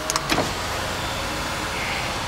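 Porsche 991 911 Cabriolet's power soft top closing: a steady motor whir with a low hum, and a couple of light clicks near the start.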